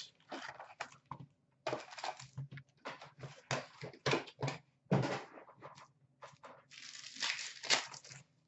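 Sealed hockey card packs from a 2014-15 Upper Deck Black Diamond box rustling and crinkling in short irregular bursts as they are handled and set down on a glass counter, with a longer crinkling stretch near the end as a pack is picked up.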